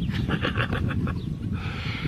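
A man laughing: a rapid run of breathy chuckles for about a second, trailing off into a long breathy exhale.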